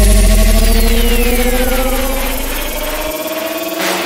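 Hardcore electronic dance music at a breakdown: a heavy sub-bass hit fading out over about three seconds, under held synth tones that slowly rise in pitch, with a high sweep falling through it and a rising noise sweep near the end building back towards the beat.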